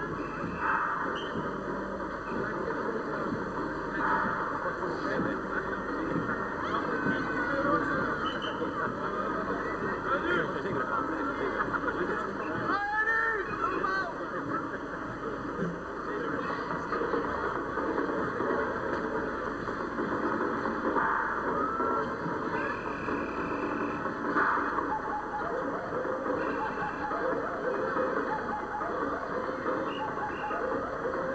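Crowd of spectators chattering together along a street, a steady hubbub with no single voice standing out. Several short high tones break through it at intervals.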